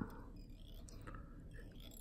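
Quiet room with faint, soft handling sounds of fingers working a fly in a vise.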